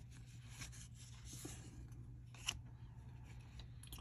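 Faint rustle of trading cards being slid against each other and shuffled in the hands, with one sharp tick about two and a half seconds in.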